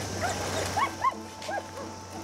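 Irish Setter whining in short cries that rise and fall in pitch, about five of them, the loudest near the middle.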